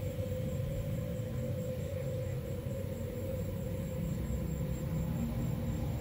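A steady low rumble with a faint, even hum above it, unchanging throughout.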